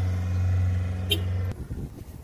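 Heavy-equipment diesel engine idling, a steady low hum that cuts off abruptly about one and a half seconds in.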